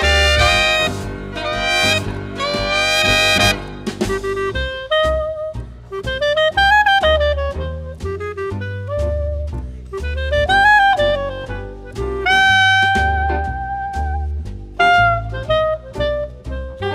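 Swing band with trumpet, alto and tenor saxophones, trombone, piano, upright bass and drums, playing live. The horns play together in chords for about the first four seconds, then a single horn line carries the melody with bent notes over walking bass and drums.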